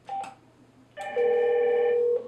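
A short electronic key beep as a speed-dial entry on a SIP emergency video interphone is pressed. About a second later a loud, steady electronic telephone ring of several tones sounds as the emergency call rings through to the SIP video phone.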